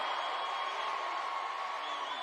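Large arena crowd cheering and screaming, a steady wash of noise with a few long high-pitched screams running through it.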